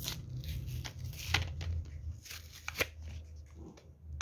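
Fingers picking at a lip balm's small plastic packaging, a run of crinkles and sharp clicks with the strongest crackles about a second and a half and nearly three seconds in. The packet is not opening.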